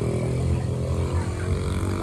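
Strong mountain wind buffeting the microphone: a low, uneven rumble that swells and dips.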